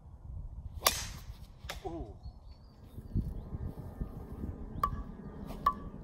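Golf driver striking a ball off the tee: a sharp, loud click about a second in. Near the end come two more sharp metallic clicks with a brief ringing ping, the sound of further drives, over a steady low rumble.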